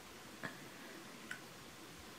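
Two faint clicks about a second apart, from a wooden stirring stick knocking against the cup of melted wax as it is stirred, over quiet room tone.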